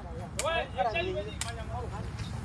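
People talking, with two short sharp clicks about a second apart, over a steady low rumble.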